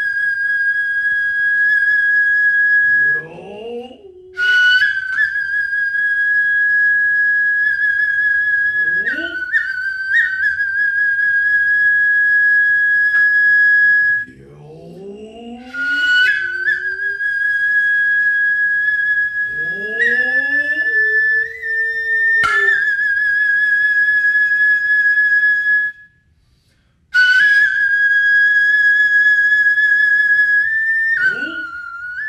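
Noh flute (nohkan) playing long, piercing high notes that break off and re-enter several times, each entry marked by a sharp tsuzumi hand-drum strike. Between the phrases the drummer gives long rising kakegoe calls. Near the end there is a pause of about a second before the flute comes in again.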